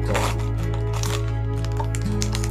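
Background music with sustained low notes, with a few short clicks and rustles of a small plastic toy and its packaging being handled.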